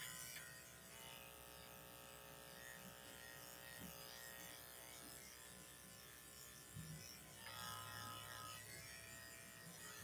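Faint, steady hum of corded electric pet clippers running as they are worked through a small dog's coat.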